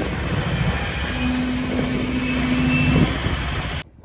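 GE wide-cab diesel locomotive running close by as it moves past, a loud steady engine-and-fan noise with a steady hum that sets in about a second in. The sound cuts off suddenly near the end.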